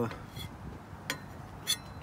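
Two light clinks of a metal spatula against a ceramic serving platter, about half a second apart, over a low background hum.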